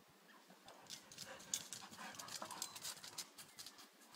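Irish Wolfhounds playing: faint scuffling with a quick, irregular run of clicking taps that starts about a second in, with a few brief dog vocal sounds among them.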